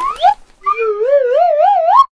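Cartoon sound effect: a quick upward pitch swoop, then a warbling, theremin-like tone that wobbles about four times a second as it climbs in pitch, cutting off suddenly at the end.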